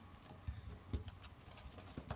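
Faint, soft knocks and rustles of stiff NZ flax (harakeke) strips being handled and woven by hand on a tabletop, with two small knocks about half a second and a second in.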